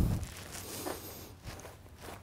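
Faint rustling and handling of heavyweight Blaklader X1600 work-pants fabric as a hanging utility pocket is pulled out of its slit, with a soft thump at the start.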